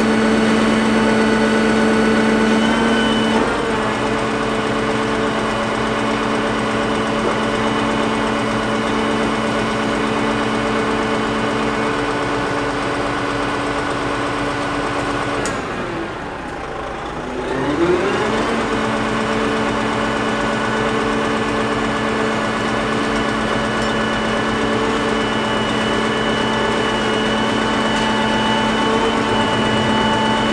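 Diesel engine of a Tatra crane truck running steadily, driving the hydraulics of its Fassi knuckle-boom crane as the boom is worked, a continuous pitched hum. About halfway through, the pitch sags and climbs back over a couple of seconds as the engine comes under load and recovers.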